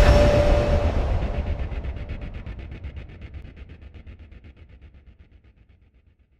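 Cinematic logo sting sound effect: the long tail of an impact, a deep rumble with a fast pulsing flutter, fading steadily until it dies away near the end.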